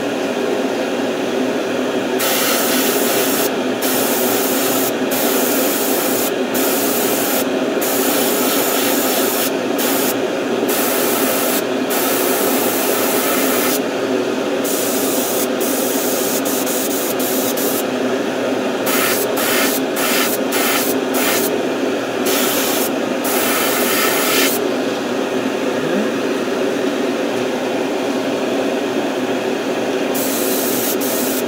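Airbrush spraying paint in a run of short hissing bursts of uneven length with brief pauses between them, over a steady low hum. The bursts stop a few seconds before the end, leaving only the hum.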